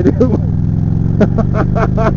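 Motorcycle engine running steadily at cruising speed, under a man's brief laughter.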